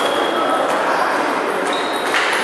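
Table tennis ball struck by rackets and bouncing on the table in a rally, sharp light knocks with hall echo, with a couple of short high squeaks over steady background chatter.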